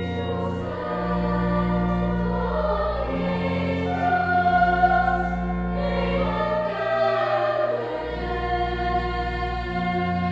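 Two girls' voices singing a carol together in a reverberant chapel, over sustained organ chords that shift every couple of seconds.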